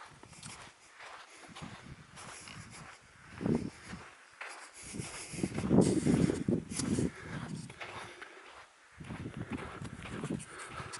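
Footsteps and handling rustle from walking with the camera held against the body, heard as irregular thumps and scuffs, louder around the middle.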